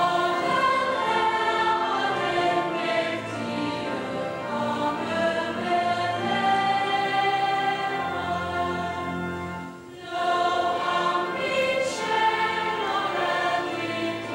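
Church congregation singing a hymn together, the many voices holding long sung notes. There is a brief break between lines a little before ten seconds in.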